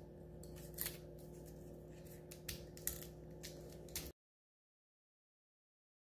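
Foil capsule being peeled and torn off the neck of a sparkling wine bottle: faint crinkling with a few sharp crackles over a low steady hum, stopping abruptly about four seconds in.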